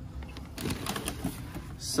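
Faint rustling and crinkling of plastic bagging and cardboard as parts are handled in a box, with a few light scattered taps and a brief hiss near the end.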